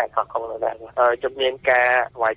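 Speech only: talking continuously on a Khmer-language radio news broadcast.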